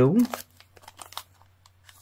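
A plastic-sleeved cutting-die packet crinkling and clicking faintly in the hands as it is handled and turned over, in a few scattered rustles.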